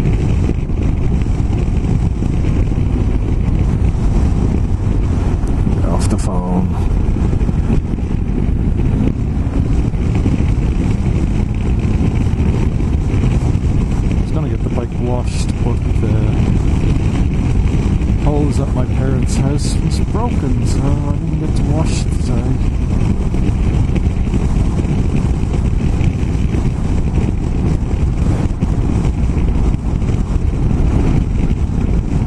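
BMW F800GS parallel-twin motorcycle cruising at a steady road speed: a steady mix of engine and wind noise on the microphone, with a few short clicks about six seconds in and again around fifteen and twenty seconds.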